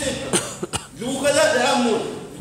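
A man talking into a microphone, broken within the first second by two short sharp bursts of a cough.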